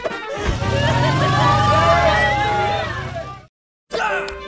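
Cartoon car-engine sound effect: a low, rapidly pulsing motor rumble under voices and music, cutting off abruptly about three and a half seconds in.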